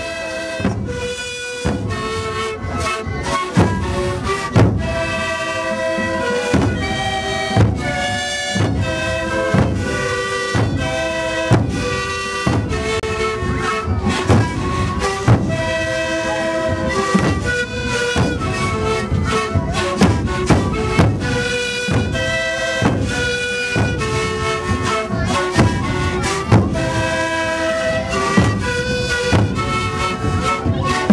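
Sikuri ensemble of many sikus (Andean panpipes) playing a melody together over a steady beat of large bombo bass drums.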